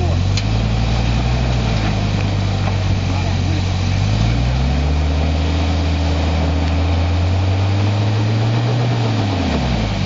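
Hummer SUV's engine pulling under load as the truck crawls over rough ground. The revs climb about halfway through, hold steady, then drop away near the end.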